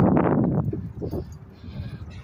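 A person's voice, loudest in the first half second, with a short second call about a second in, then fading to quieter background.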